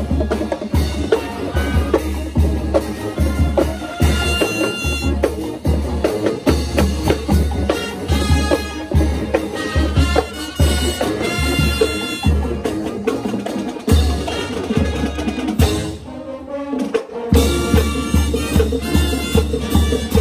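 Marching band playing live: brass carrying the tune over a steady bass-drum beat. About sixteen seconds in the drums drop out for a moment, then the beat comes back in.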